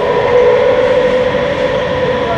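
A steady, loud machine drone with a constant humming tone from the dealer's service workshop, with no starts or stops.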